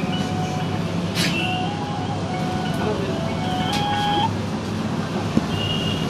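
Roadside street noise with a steady low traffic hum. Over the first four seconds a thin, simple melody of single tones steps up and down in pitch. A couple of sharp clicks sound, one about a second in and one near four seconds.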